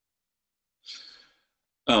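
A person's audible breath, soft and about half a second long, about a second in, just before they start speaking again near the end.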